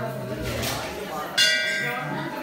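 Hanging temple bell struck once, about a second and a half in. It gives a bright clang that rings on, over the fading hum of the strike before.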